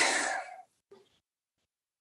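A breathy exhale trailing off the end of a spoken word and fading out within about half a second, followed by silence.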